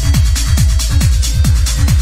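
Hard techno with a steady driving kick drum, each beat dropping in pitch, over deep bass and fast ticking hi-hats.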